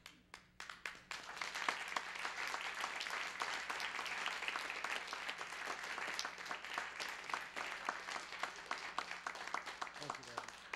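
Audience applauding: a few scattered claps at first, swelling into steady applause about a second in, then thinning to more separate claps near the end.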